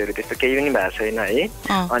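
A voice with music behind it, as heard on a radio broadcast.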